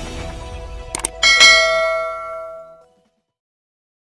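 Intro jingle sound effects: a couple of sharp clicks about a second in, then a loud, bright chime that rings out and fades away within about a second and a half.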